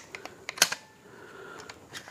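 Sharp clicks from the cocking lever of a Reximex Throne Gen2 .22 PCP air rifle being worked by hand: a quick cluster of clicks in the first second and a few more near the end.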